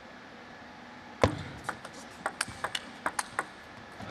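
Table tennis rally: the plastic ball clicking sharply off rackets and the table about ten times in quick succession, opening with the loudest knock about a second in and ending about three and a half seconds in.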